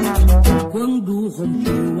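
Choro music from an acoustic ensemble of plucked guitars and percussion. A deep low beat drops out about half a second in, leaving a melody line that bends and slides in pitch over the strings.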